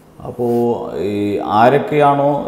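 Man's voice speaking after a brief pause, with some long, drawn-out vowels.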